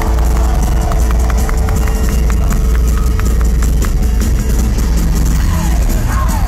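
A pop-punk band playing live through a venue PA, heard from inside the crowd, with a heavy, steady bass-and-drum low end and a quick regular ticking through the middle. A voice, bending in pitch, comes in near the end.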